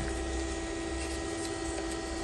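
Fokoos Odin-5 F3 3D printer humming steadily as it stands at a bed-levelling point: one low even tone with fainter higher whines over it, unchanging throughout.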